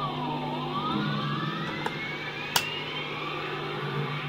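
Electric guitar (Fender Stratocaster) through an amp: a high sustained tone dips in pitch, then glides slowly and steadily upward, over low held notes. Two sharp clicks land in the second half.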